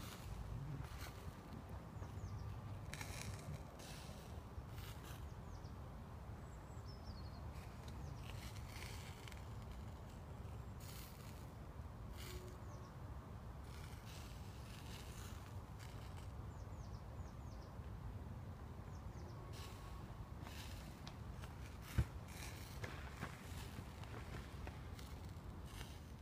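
Bacon rashers and burger patties sizzling on a wire rack over charcoal, with irregular spits and crackles of fat, over a low rumble of wind on the microphone. One sharp click a few seconds before the end.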